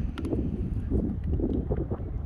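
Wind buffeting the microphone: a steady low rumble with gusty swells. A brief click near the start comes from a stiff cardboard board-book page being turned.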